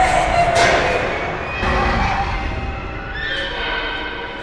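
Film-trailer sound design: shrill, wavering pitched sounds over a deep rumble, swelling three times.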